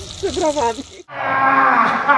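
A voice talking briefly, then after an abrupt cut, loud, drawn-out shouting from a man yelling with his mouth wide open.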